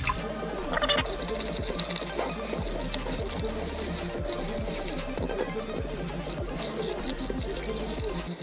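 A handheld battery milk frother whirs steadily as it whisks powder into a glass of water, churning the liquid. Background music with a regular beat plays throughout.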